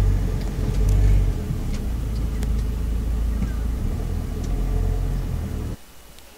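A car driving, heard from inside the cabin: a steady low rumble of engine and road noise. It cuts off abruptly near the end.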